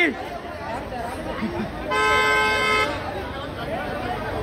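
A car horn sounds once about two seconds in, a single steady tone lasting about a second, over the babble of a crowd.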